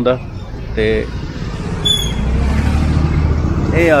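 A motor vehicle engine running nearby, a steady low hum that grows louder about halfway through, over general street noise.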